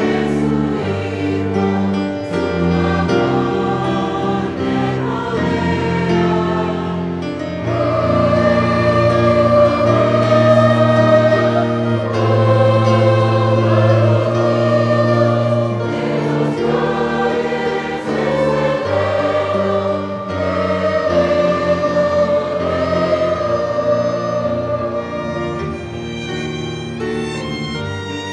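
Mixed youth choir singing a song of praise, growing louder about eight seconds in.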